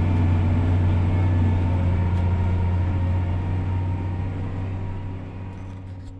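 John Deere 7R 290 tractor's six-cylinder diesel engine running steadily under way, a deep drone heard from inside the cab. It fades away over the last few seconds.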